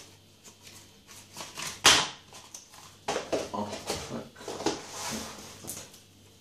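Packaging and the phone's plastic protective film being handled on a table, with scattered rustling and light clicks. One sharp, loud sound comes just before two seconds in.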